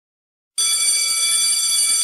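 After half a second of silence, a loud, steady ringing tone with many overtones starts suddenly and holds without a break, much like an alarm or electric bell.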